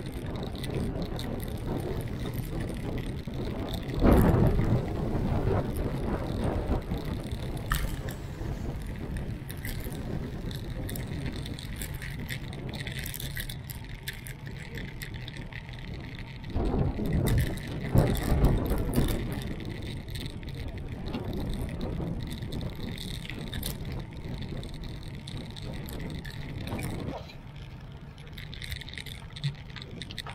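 Wind rushing over the microphone of a camera riding on a moving bicycle, with road and city traffic noise underneath. There are louder gusts about four seconds in and again for a few seconds past the middle.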